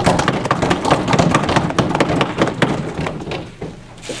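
Audience applause: a dense patter of many quick strikes that thins out and dies away in the last half second.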